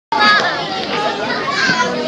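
Many children talking and calling out at once, a busy overlapping chatter of high voices.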